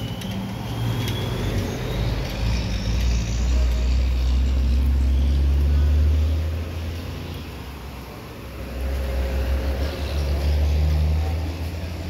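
Road traffic passing close by: a low rumble of cars and trucks that swells around the middle and again near the end, with a faint rising whine in the first couple of seconds.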